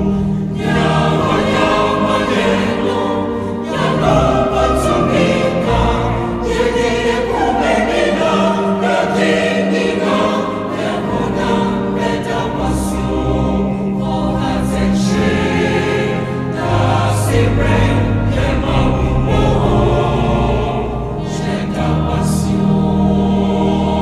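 Choir singing a hymn in Twi over sustained low accompaniment notes.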